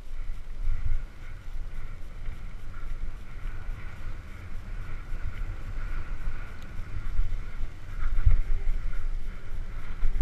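Wind rumbling on the microphone of a helmet-mounted camera on a mountain bike moving down a dirt trail. The low rumble rises and falls unevenly, swelling about a second in and again near the end.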